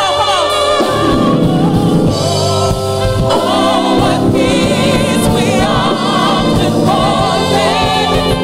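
Live gospel praise music: several singers with microphones, some of their notes held with vibrato, over a church band.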